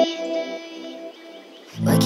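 Deep house music: a held synth chord rings out and fades low, then a heavy beat with bass and drum hits comes in near the end.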